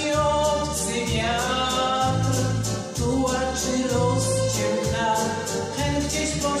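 A woman singing a slow Polish song solo, holding long notes, over instrumental accompaniment with a bass line that changes about once a second.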